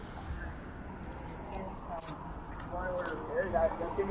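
Low, steady city street rumble from traffic, then passersby talking as they walk close past, their voices growing louder in the last second or so.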